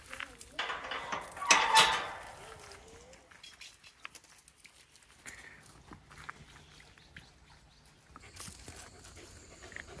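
A dog gives one loud, short call about a second and a half in. Faint wavering whines come just before and after it, and the rest is quiet with faint scattered ticks.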